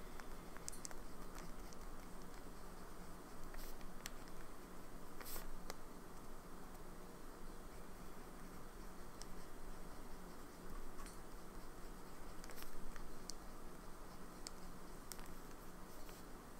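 PenBBS 480 fountain pen nib writing on crinkled Tomoe River paper: faint scratching with scattered light ticks as the nib moves and lifts.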